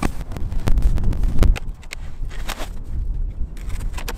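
Snow being pushed off a beehive's cover board and the board lifted away: scattered knocks and scrapes, the loudest in the first second and a half, over wind rumbling on the microphone.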